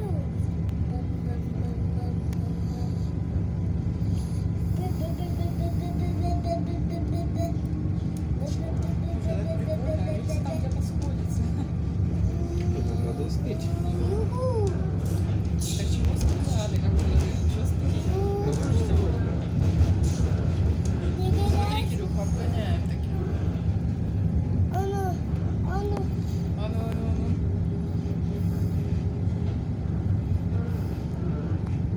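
Steady low rumble of the Intercity+ EKr1 electric train running at speed, heard from inside the carriage. Over it, a child's voice rises and falls at intervals without clear words.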